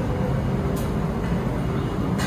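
Steady low rumble of indoor restaurant room noise, with a brief sharp click a little under a second in.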